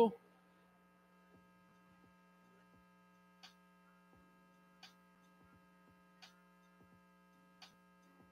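Faint, steady electrical mains hum, with a few soft clicks spaced about a second and a half apart.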